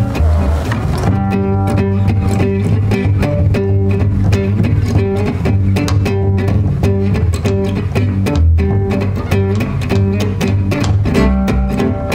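Gypsy-jazz trio playing live: two acoustic guitars and a pizzicato double bass, the rhythm guitar keeping an even, steady chordal beat over the bass line. About a second in, one excerpt fades into the next at an edit join.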